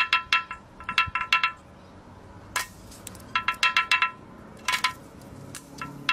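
Quick clusters of bright, ringing clinks, every strike sounding the same few pitches. There are several short runs of rapid strikes with a single clink in between, and the longest run is in the second half.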